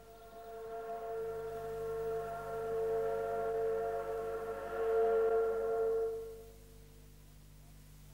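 Ship's horn sounding one long, steady blast of about six seconds at a fixed pitch, swelling in and fading out.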